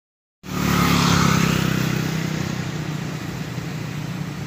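A motor vehicle's engine passing by, starting suddenly about half a second in, loudest just after, then fading steadily as it moves away.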